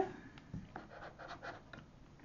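Fingers pressing and smoothing a freshly glued cardstock panel onto a folded paper card wallet: faint, scattered paper rubbing and rustling.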